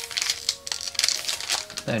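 Foil wrapper of a Magic: The Gathering booster pack crinkling and crackling as it is pulled open by hand, in a run of irregular sharp crackles.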